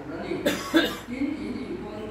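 A person coughing twice in quick succession, about half a second in, then talking resumes.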